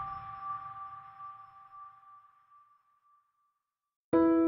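The fading tail of an intro jingle: a held ringing tone dies away over about three seconds, then silence.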